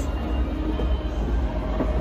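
A steady low rumble with faint background music over it.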